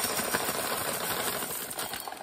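Dry pinto beans pouring out of a plastic bag onto a plate: a steady stream of many small clicks and rattles that thins slightly near the end.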